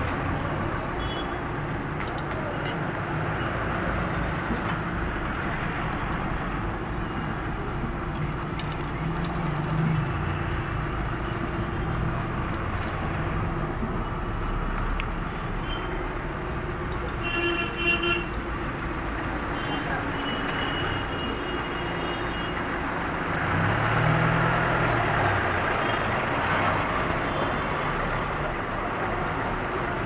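Busy street traffic heard from a moving car: a steady mix of engines and road noise, with a brief vehicle horn toot a little past the middle.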